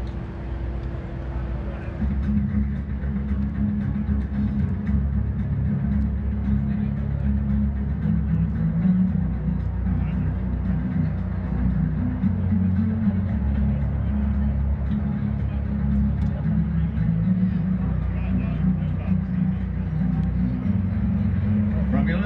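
Low rumble of a C-17 Globemaster III's four turbofan engines as the transport flies in toward the crowd, getting louder about two seconds in. Public-address music plays along with it.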